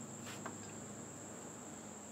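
Crickets trilling in one steady, unbroken high-pitched tone, faint.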